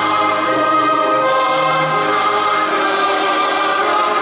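Anthem played during the pre-match lineup: a choir singing long, held notes over orchestral backing.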